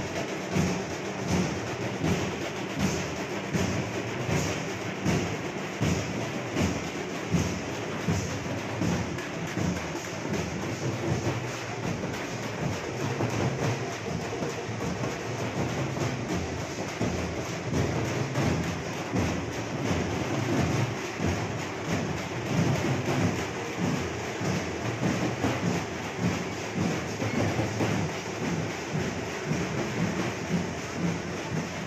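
A troupe of dappu frame drums beaten with sticks, playing a steady, repeating rhythm.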